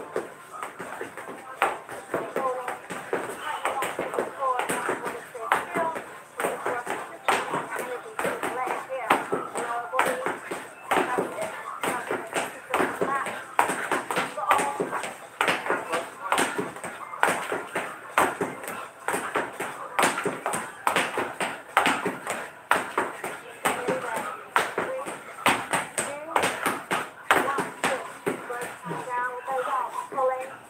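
Feet stepping and landing on a hard floor during a fast bodyweight workout: quick, irregular taps and thuds, several a second. A person's voice runs underneath throughout.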